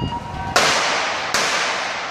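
Starter's gun fired twice, about a second apart, each shot ringing on in the velodrome hall; the second shot calls back a false start.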